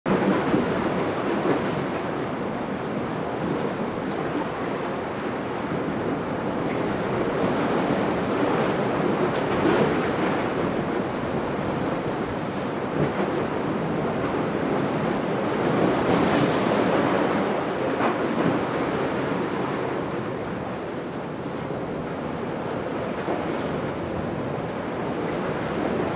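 Steady rush of wind and churning sea water, with wind buffeting the microphone; the level swells and eases slowly.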